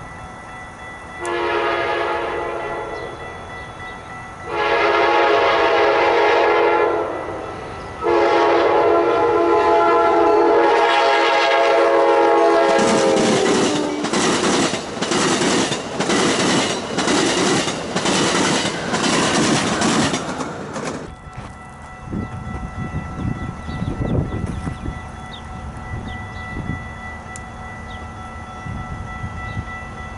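Amtrak Hiawatha passenger train sounding three long blasts on its chime horn as it approaches; the last blast drops in pitch as the train passes. Then the coaches' wheels click steadily over rail joints, about one and a half clicks a second, before the sound falls to a lower rumble.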